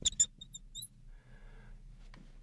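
Neon marker squeaking on a glass lightboard in several short strokes as a word is written, mostly within the first second.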